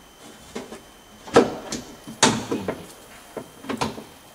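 Metal window-regulator parts knocking and clicking against the inside of a BMW E46 car door as they are fitted by hand. Two louder knocks come about a second and a half and two seconds in, each ringing briefly, with lighter clicks around them.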